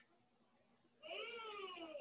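A single drawn-out vocal call starting about a second in, lasting about a second and falling in pitch toward the end.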